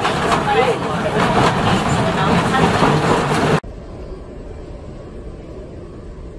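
Passenger chatter over the running noise inside an old wooden-seated railway carriage, cut off abruptly about three and a half seconds in. A quieter, steady low rumble of an underground metro station follows.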